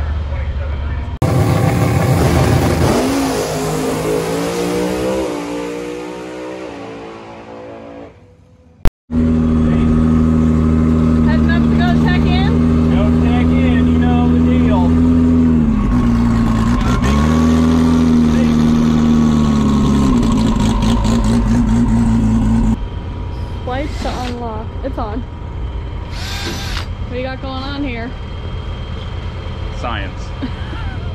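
Turbocharged 2JZ inline-six in a Camaro race car running steadily at low speed, heard from inside the cabin, its revs dipping briefly and coming back up near the middle. Before it, a loud engine sound falls away over several seconds.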